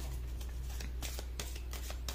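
A deck of archetype cards being shuffled by hand: a quick, uneven run of soft card clicks and flicks. A steady low hum runs underneath.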